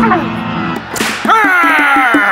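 Cartoon background music; about a second in, a quick whoosh sound effect, followed by a loud pitched sound that slides downward in pitch.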